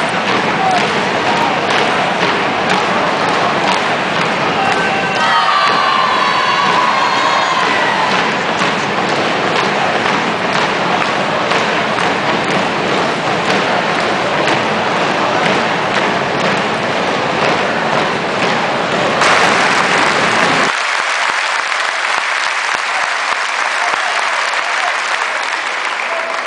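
Large crowd applauding and cheering, dense clapping mixed with shouting voices that rise together briefly about five to eight seconds in. Near the end the sound turns suddenly thinner and higher, losing its low end.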